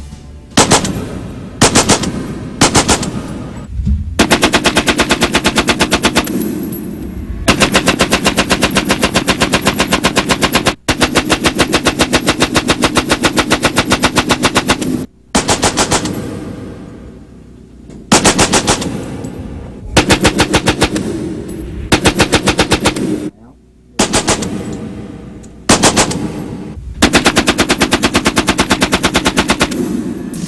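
Vickers Model 1912 water-cooled, belt-fed machine gun firing in automatic bursts. There are a couple of short bursts first, then a series of long bursts of several seconds each, separated by brief pauses.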